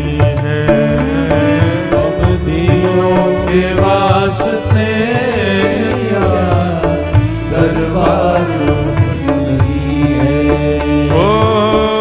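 Devotional bhajan being sung to instrumental accompaniment: a drawn-out, winding vocal melody over sustained tones, without a break.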